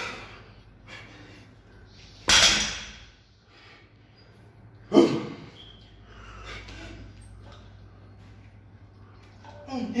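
Heavy barbell deadlift reps: two loud, sudden bursts about two and five seconds in, the lifter's forceful breaths and the loaded bar's plates meeting the rubber floor, over a steady low hum.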